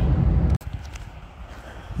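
Steady low rumble of engine and road noise inside a vehicle cab at motorway speed, cut off abruptly about half a second in and replaced by much quieter outdoor background noise.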